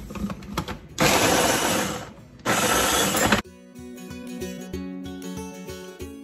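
Ninja mini food chopper's motor running in two pulses of about a second each, chopping onion very fine. A few seconds in, background music with a steady beat takes over.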